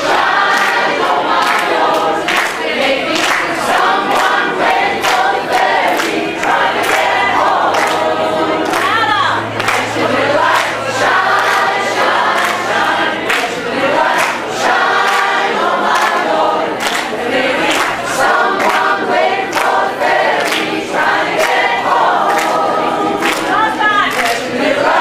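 A women's choir singing a lively gospel-style song, with the singers and crowd clapping steadily on the beat.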